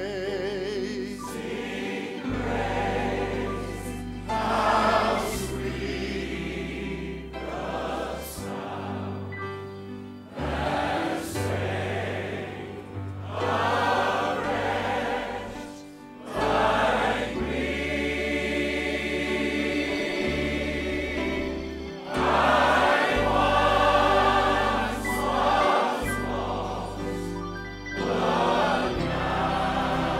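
A large crowd of voices, singers and audience together, singing a gospel hymn in phrases, over an instrumental accompaniment holding long bass notes that shift every second or two.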